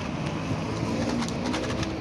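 Steady wind and rolling noise from riding a bicycle along a paved street, with a faint low drawn-out tone about halfway through and a few light clicks near the end.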